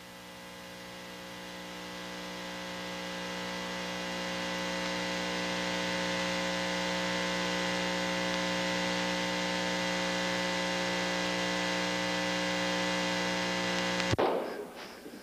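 A steady electrical hum with a buzzy stack of overtones and a hiss above it. It swells gradually over the first few seconds, holds level, then cuts off abruptly at the end.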